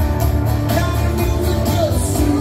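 Live rock and roll band playing: electric and acoustic guitars over a steady beat, with a sung vocal line.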